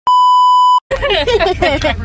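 A steady electronic bleep tone, lasting a little under a second and cutting off sharply: the test tone laid over colour bars, used here as an edited-in censor bleep. Talking follows right after.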